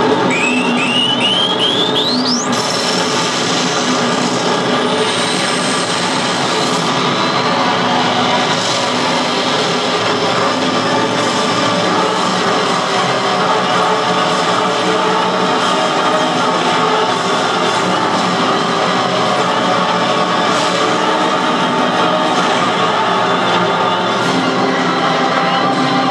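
A pachinko machine's speakers play dramatic music and sound effects during a fever-mode animation. It opens with a quick run of rising sweeps, ending in one steep climb about two and a half seconds in, then settles into a dense, steady music bed.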